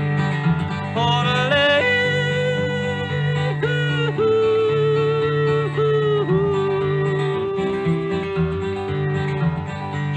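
Wordless male country yodel, with held notes broken by sudden leaps up and down in pitch, over a strummed acoustic guitar.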